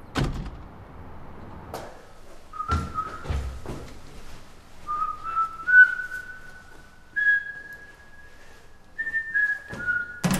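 A man whistling a slow tune of held notes that climb gradually higher and drop back near the end. Sharp knocks come at the start, twice around the third second and again near the end, as of mailbox doors or handling at the boxes.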